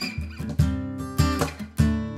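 Acoustic guitar strummed, with a sharp stroke roughly every half second and the chords ringing on between strokes.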